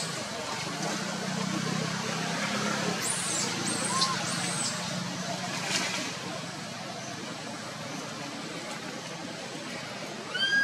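Steady outdoor background noise with the low hum of distant motor traffic, strongest in the first half. Three brief high chirps come about three to four and a half seconds in.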